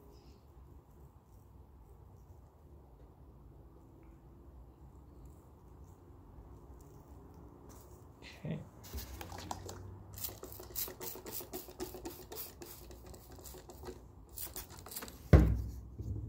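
Hands working sawdust onto a glue-coated foam block over newspaper: faint at first, then from about halfway a quick run of scratchy rustles and taps, ending in one loud thump shortly before the end.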